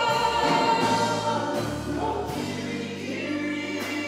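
A cast chorus of many voices singing a held, gospel-style chorus together over low bass notes from a band; the bass note shifts about two seconds in.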